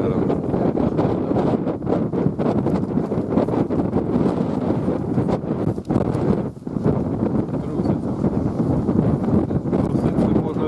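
Wind buffeting the microphone: a continuous, rough, gusting rush that dips briefly about six seconds in.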